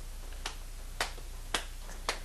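Sharp clicks in a steady rhythm, three of them about half a second apart.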